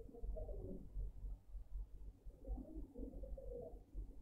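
Faint bird cooing, heard twice, over a low room rumble.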